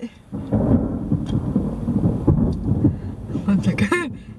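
Thunder rolling as a long low rumble that builds about half a second in and lasts about three seconds, heard from inside a car.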